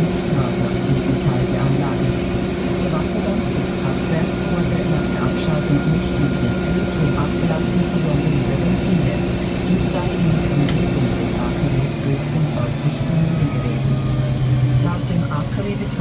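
Tractor engine running steadily, heard from inside the cab while driving on the road. The engine note drops slightly about three-quarters of the way through.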